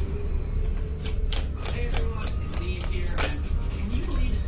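A small deck of cards being shuffled and handled by hand: a series of short, crisp flicks and taps of card stock, irregularly spaced, over a steady low hum.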